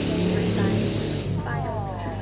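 Audio of a TV talent-show clip played back: a noisy crowd-like haze that fades about a second in, followed by a voice speaking.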